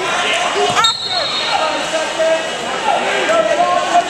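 Wrestling shoes squeaking on the mats, many short rising-and-falling squeaks overlapping, over the voices in a large echoing hall.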